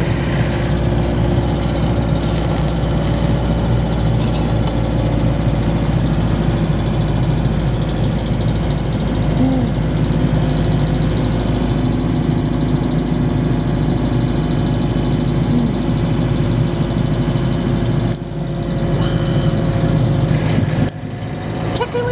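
Camper van engine and road noise heard from inside the cab while driving, a steady drone that dips briefly twice near the end.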